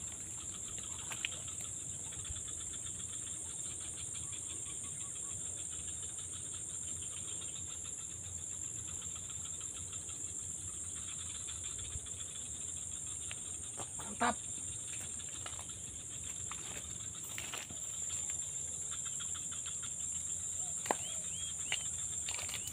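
Insects in the grass making a steady, high-pitched drone, with a faint fast ticking under it. A short rising call cuts in about fourteen seconds in, and a few brief calls come near the end.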